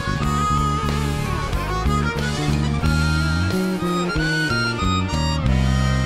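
Harmonica playing the lead melody with vibrato over a groove of electric bass, keyboards and drums. The MTD bass is played live along with the track.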